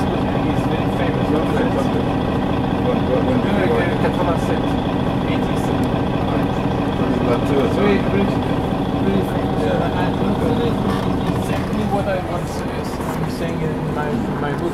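Steady engine hum inside a moving city bus, heard from a passenger seat, with passengers' voices talking in the background.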